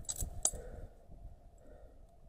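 Metal climbing hardware on a harness (carabiners and a rope device) clinking: a few sharp clinks in the first half second, the loudest about half a second in, then quiet handling noise.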